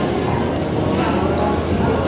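Indoor arena ambience: indistinct chatter of people in the background, with the footfalls of a walking horse and cattle on the arena dirt.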